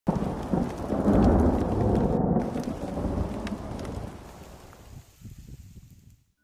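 Thunder rolling over heavy rain. It starts suddenly, is loudest in the first couple of seconds, then fades away.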